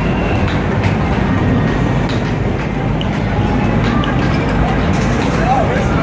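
Loud, steady arcade din with a few short knocks of basketballs being shot at an arcade hoop machine.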